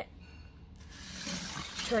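A LEGO brick model being turned around by hand on a wooden tabletop: a soft scraping and rustling that starts about a second in and grows louder.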